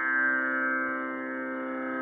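Steady sruti drone holding its pitches unchanged with no voice over it: the pitch reference that Carnatic singing is tuned against.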